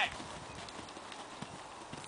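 Soft hoofbeats of a horse cantering on an arena surface, as it approaches a jump.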